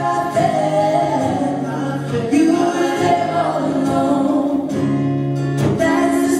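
A group of singers performing a gospel song live, with long held notes.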